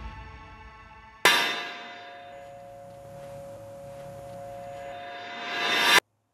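A single hammer blow on an anvil about a second in, followed by a clear two-tone metallic ring that holds for several seconds. A fading music tail comes before it, and a noise swells up near the end.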